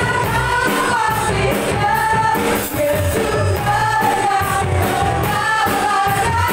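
Upbeat live worship song sung in Indonesian by several voices together, over drums with a steady beat, bass guitar and keyboard.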